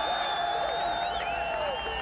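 A crowd of hard-hatted workers cheering and whooping, many long sliding shouts overlapping over a steady roar.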